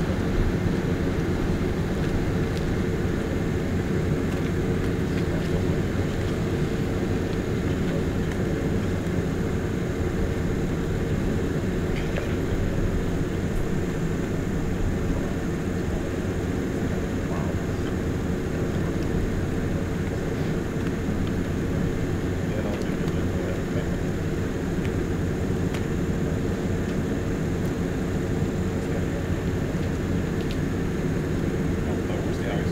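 Fire engine idling, a steady low engine drone with no changes in speed.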